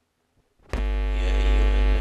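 Near silence, then about two-thirds of a second in, a man's voice starts a long, steady held note of Quranic recitation through a microphone, with a heavy low hum under it.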